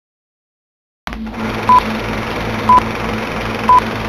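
Film countdown leader sound effect: after a second of silence, a steady hiss and hum cut in, with a short, loud beep once a second, three times.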